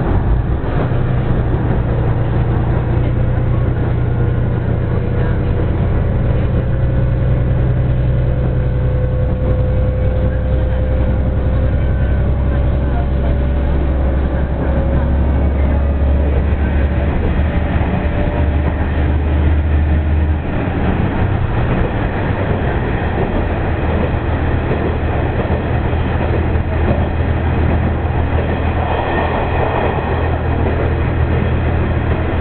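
Diesel railcar heard from inside the passenger car: the engine's steady low drone under way, with wheel and rail noise. About two-thirds of the way through, the engine note changes and the running noise becomes harsher.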